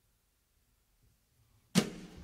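A pause in a jazz quartet's recording, near silent, broken near the end by one sharp percussive hit that dies away quickly, just before the ensemble comes back in.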